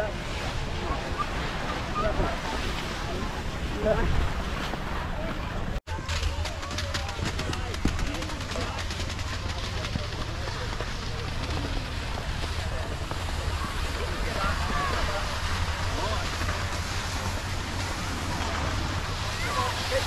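Steady rush of skis sliding over snow, with wind buffeting the camera microphone as a low rumble. The sound breaks off for an instant about six seconds in.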